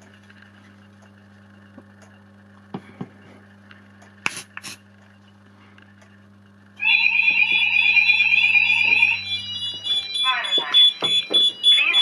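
A fire alarm going into alarm after a smoke detector trips: about seven seconds in, the sounders start with a loud, rapidly warbling alarm tone. From about ten seconds a recorded spoken alarm message from a Fire Cryer voice sounder takes over. Before the alarm there is only a faint steady hum with a few light clicks.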